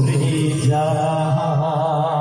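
A man singing a jharni, a Bengali Muharram folk song, into a microphone in a chanting style. About a second in he settles into a long held note with a wavering vibrato.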